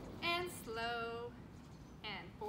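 A woman's voice sings out a short low note and then a higher note held steady for about half a second, a sung call rather than speech.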